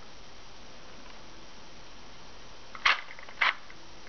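Two sharp, short clicks about half a second apart near the end, over a steady low hiss: the trigger of a 3D-printed prop pistol being worked.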